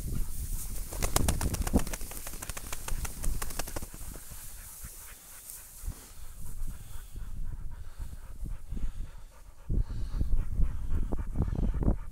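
Dry prairie grass brushing and crackling against legs and gear while walking through it, with a quieter stretch in the middle. Low thumps and rumble come near the end.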